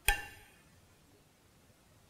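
A single clink of a metal spoon against a ceramic soup bowl, a short ringing tone that dies away within half a second, followed by quiet room tone.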